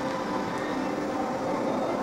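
Steady mechanical background hum and hiss with a few faint steady tones, unchanging throughout.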